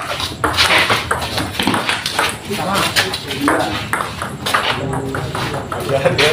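Table tennis rally: a celluloid ping-pong ball clicking sharply off paddles and the table top, with players' and onlookers' voices over it.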